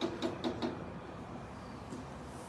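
Rapid knocking on a door, about five knocks a second, stopping under a second in.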